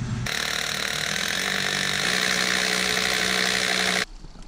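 A motor-driven machine running steadily at one speed, starting suddenly just after the start and cut off abruptly at the end.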